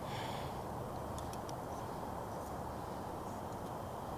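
MSR Reactor canister stove's gas burner running under a pot of broth, a steady low rushing hiss. A few faint ticks come about a second in.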